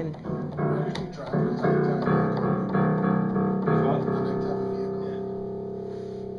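Piano keys struck unevenly by a toddler, a string of chords about every half second, the last one, about four seconds in, left to ring and slowly fade.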